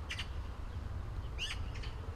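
A few short, high bird chirps, one near the start and two more a little past halfway, over a steady low rumble.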